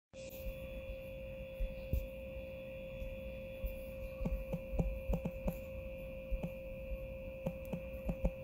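A steady electrical hum with a thin high whine above it, joined by a scattering of faint, irregular clicks from about halfway through.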